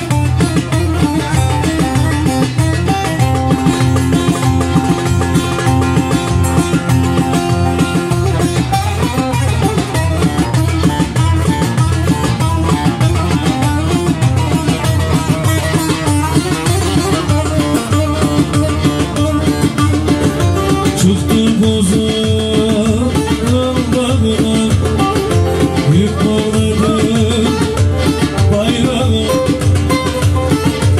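Live Turkish folk music: a bağlama (saz) plays a plucked melody over keyboard accompaniment with a steady beat.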